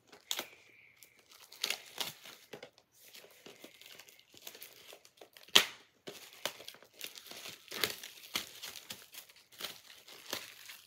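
Plastic wrapping being picked at and torn off a steelbook Blu-ray case by hand: irregular crinkling and crackling, with one sharp snap about five and a half seconds in.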